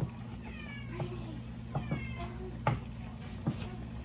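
A cat meowing twice, each meow falling in pitch, about half a second and two seconds in. Under it come a few sharp knocks of a wooden spoon against a cooking pot and a steady low hum.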